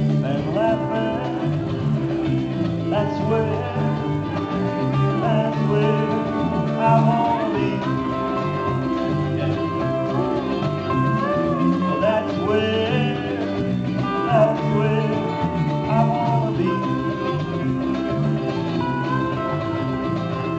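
A live country-style band playing an instrumental passage: strummed ukulele and electric bass under a lead line of long held notes that slide from pitch to pitch.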